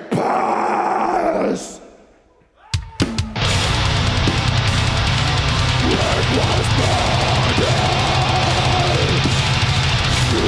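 Heavy metal band playing live with distorted electric guitars and a drum kit. The music cuts out almost completely about two seconds in, then a few sharp hits bring the band back in just before three seconds, and it plays on at full volume.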